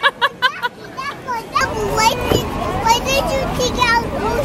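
Toddlers' high-pitched voices babbling and squealing over steady outdoor background noise, after a brief run of quick, evenly repeated vocal bursts at the very start.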